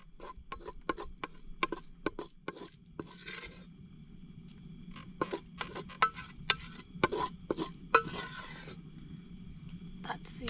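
Wooden cooking stick scraping and knocking against the inside of an aluminium cooking pot as cooked greens are scooped out. There are two runs of quick strokes with a short lull around the middle.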